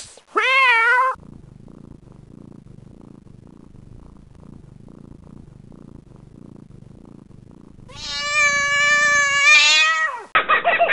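A cat meows once briefly with a wavering pitch, followed by several seconds of quiet low rumbling. Near the end a second, longer and louder meow is drawn out, its pitch rising at the close.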